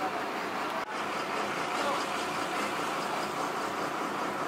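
A motor vehicle engine running steadily, with faint voices in the background.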